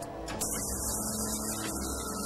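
Film soundtrack music with a steady hum. About half a second in, a high hiss and a thin steady tone come in suddenly.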